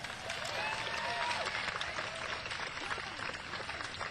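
Audience applauding, with a few cheers or whoops in the first second or so.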